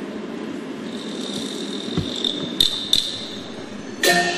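A pause in a stage performance: steady hall ambience with a faint high tone in the middle, and a few short, light knocks about two and three seconds in.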